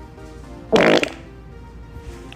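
A single loud, short fart, about a third of a second long, about a second in, with a rapid fluttering texture. Steady background music plays underneath.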